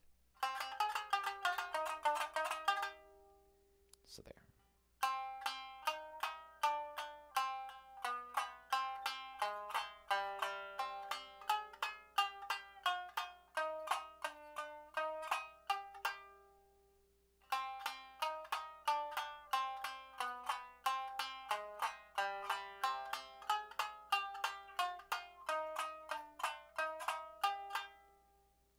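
Tsugaru shamisen played with a bachi plectrum: quick, sharply struck notes in three runs with short pauses about three seconds in and again after sixteen seconds. It is a drill of up-and-down bachi strokes that switches between strings.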